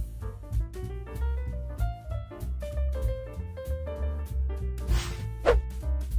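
Background instrumental music with a jazzy feel: bass, drum hits and melodic notes. About five seconds in, a swoosh with a sliding pitch.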